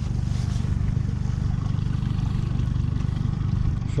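Outboard motor running steadily, a low even drone with a fast regular pulse.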